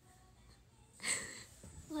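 A woman's short, breathy laugh, mostly air with little voice, about a second in. Her speech starts at the very end.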